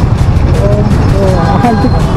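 Motorcycle running at low speed in slow city traffic, a steady low rumble close to the microphone, with voices over it.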